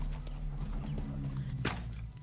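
Horses' hooves clopping as several ridden horses walk along a trail, over a steady low rumble. A single sharp crack near the end.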